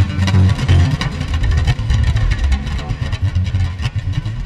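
Free-jazz improvisation: plucked bass playing dense, busy low lines with drums striking rapidly over it.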